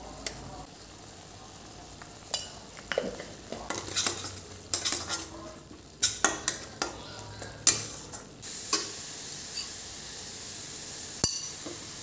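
Steel spatula scraping and knocking against a stainless steel kadai as a thick masala is stirred, in a quick flurry of strokes for several seconds, then two single taps near the end. A faint sizzle of frying runs underneath.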